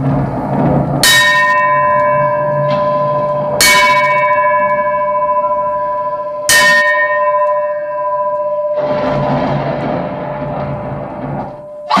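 A brass hand bell struck three times, a few seconds apart. Each stroke rings on in a clear, steady tone, marking a moment of silence. A low drone runs underneath.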